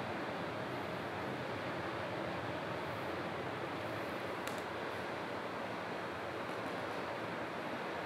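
A steady, even hiss of noise, with a single faint click about four and a half seconds in.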